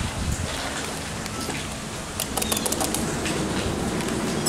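Sliding doors of a 1982 West Coast hydraulic elevator opening as the car arrives at the landing, with a quick run of clicks and rattles from the door equipment about two seconds in.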